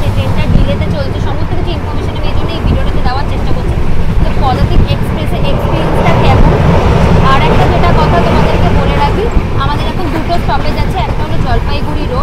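Loud, steady running noise of a moving passenger train heard from inside a sleeper coach with its window open, with a woman talking over it.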